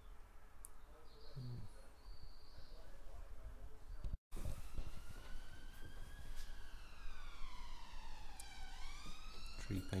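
An emergency vehicle's siren sounding a slow wail that starts about four seconds in, its pitch gliding up, down and up again over several seconds.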